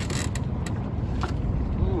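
Boat motor running with a steady low rumble and wind on the microphone, with a couple of short sharp sounds in the first second.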